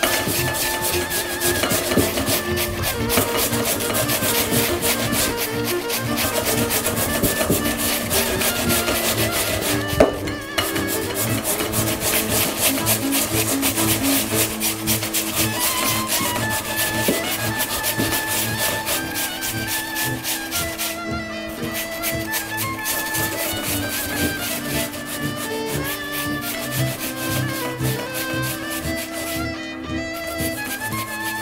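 Raw potatoes grated by hand on the fine holes of a metal box grater: continuous quick rasping strokes. Music plays underneath.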